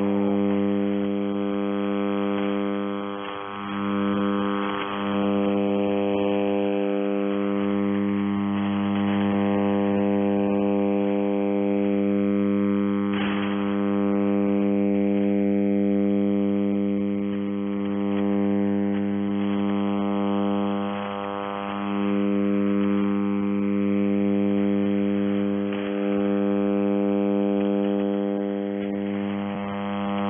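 Shortwave receiver audio on 5400 kHz with no voice transmission: a steady buzzing hum of evenly spaced interference tones, with faint whistles that slowly slide in pitch and a few brief dips.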